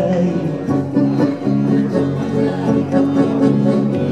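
Live acoustic band playing Portuguese music: plucked guitar notes over held accordion chords and double bass.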